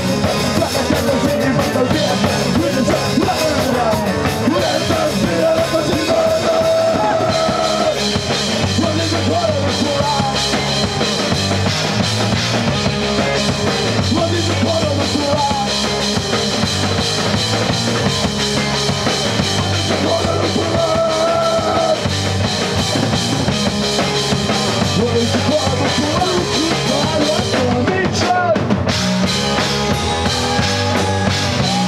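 Live rock band playing a loud, steady passage: drum kit keeping the beat under electric guitar, bass and keyboard.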